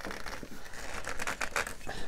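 Hollow plastic of a 12-inch Mattel Lightyear Zyclops action figure creaking and clicking as hands try to twist its stiff waist joint, which will not turn; it sounds as if it would break.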